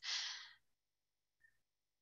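A woman's short breathy sigh right after speaking, fading out within about half a second, then near silence.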